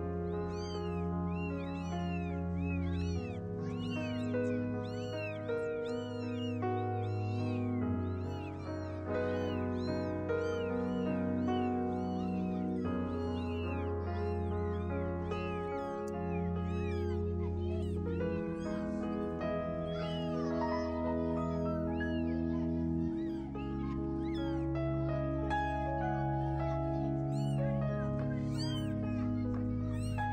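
Cold, damp newborn kittens, about a day old, crying over and over with short, high mews that rise and fall in pitch. Background music of slow, sustained chords plays under them.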